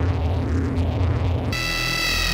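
Electronic horror sound design: a loud, low throbbing drone with a noisy rumble. About one and a half seconds in it cuts abruptly to a sustained electronic tone with many high overtones over a pulsing bass.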